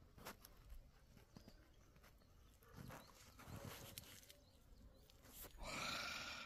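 Near silence outdoors: faint footsteps and soft rustling, with a few light clicks, and a brief soft rush near the end.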